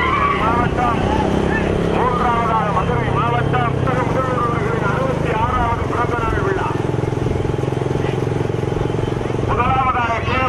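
A motorcycle engine running steadily at speed, with a man's voice calling or shouting loudly over it.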